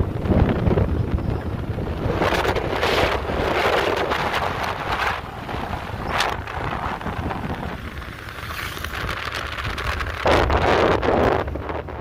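Wind buffeting the microphone in gusts over the low rumble of a moving vehicle on the road.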